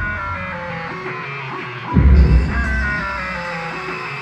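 Live pop concert music over an arena sound system: a heavy bass hit about two seconds in, with a descending line of high notes between the hits.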